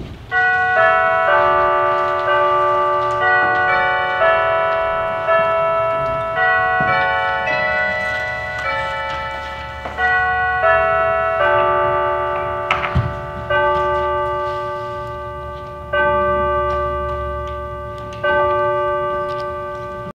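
Bells ringing a run of pitched notes, about two strikes a second, each note ringing on and overlapping the next. There is one sharp knock about two-thirds of the way through.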